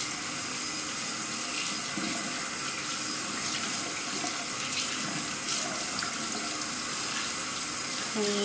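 Bathroom faucet running steadily into a sink while hands are rubbed and rinsed under the stream, washing off soap lather.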